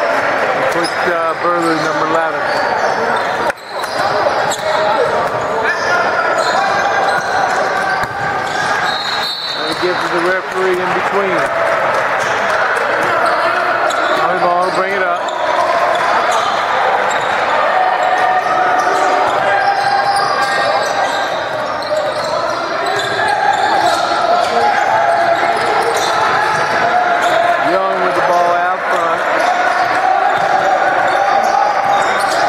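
A basketball being dribbled and bouncing on a hardwood gym floor during a game, in the echo of a large hall.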